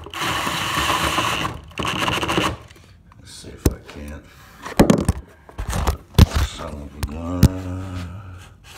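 Cordless drill with a three-inch hole saw running in a long burst and then a short one, spinning in the freshly cut hole. Then come several sharp knocks and clicks as the aluminium plug is worked out of the saw.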